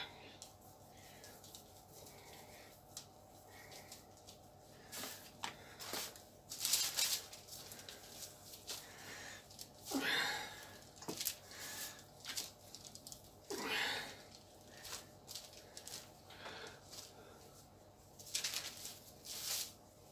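Scattered soft rustling and handling noises, a dozen or so short bursts a few seconds apart, as bread dough is kneaded by gloved hands, stretched and folded.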